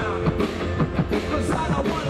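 Live rock band playing on stage: electric guitar and a drum kit keeping a steady beat, with a singer on the microphone.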